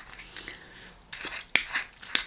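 Mouth noises: lip smacking and tongue clicks as a woman tries to clear the taste of body spray from her mouth, with one sharp click about one and a half seconds in.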